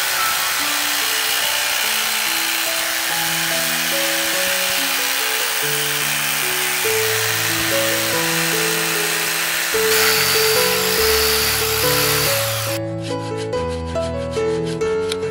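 Electric jigsaw cutting through a Java teak plank: a steady saw noise that turns brighter about ten seconds in and stops suddenly near the end. Background music with a simple melody plays throughout.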